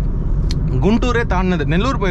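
Steady low rumble of engine and road noise inside a Honda City's cabin cruising at highway speed, with a short click about half a second in and a man's voice taking over from about a second in.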